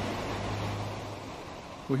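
Steady rushing noise with a low hum underneath that fades out toward the end.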